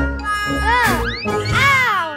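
Cartoon balloon-rocket sound effects over children's background music: a low rumble, then two rising-and-falling whistling glides with a whoosh as the balloon rocket shoots off.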